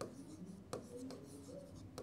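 Faint scratching strokes of a pen writing letters on a classroom board.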